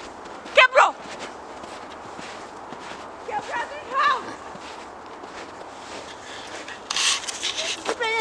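Short vocal calls from a child over steady outdoor background hiss, then near the end a brief burst of crunching as the child digs into the snow.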